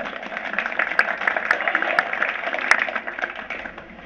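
Theatre audience applauding: a burst of many hands clapping that fades away near the end.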